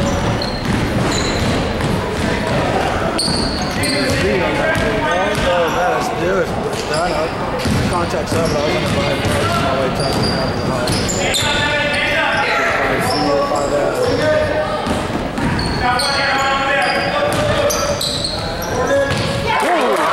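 Basketball being dribbled on a hardwood gym floor among the voices of players and spectators, with short high squeaks of sneakers on the court.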